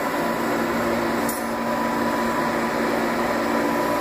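A steady machine hum made of several held tones, one low and one higher and whining, that does not change.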